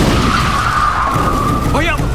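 SUV tyres screeching in a skid, one steady high screech lasting about a second and a half, over the low rumble of an explosion.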